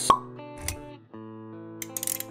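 Intro jingle music for an animated logo, opening with a sharp pop about a tenth of a second in. A low thud follows just past half a second, and the music then settles into held chords.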